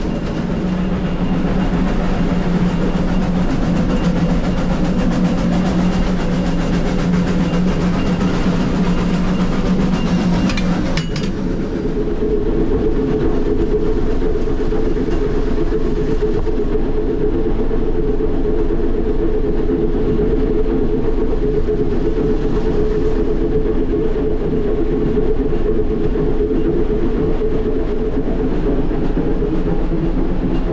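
Continuous loud cab noise of a Baldwin K-36 narrow-gauge steam locomotive working upgrade: the oil fire burning in the firebox and the locomotive running. A steady low hum changes abruptly to a higher one about eleven seconds in.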